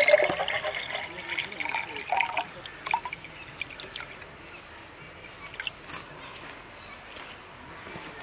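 Water pouring in a thin stream into the JetBoil Flash's metal cooking cup. It splashes loudly for the first two or three seconds, then tapers to a thin trickle and a few drips as the pour stops.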